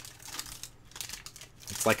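Foil wrapper of a 1992 Upper Deck baseball card pack crinkling irregularly as it is peeled open by hand. A voice starts near the end.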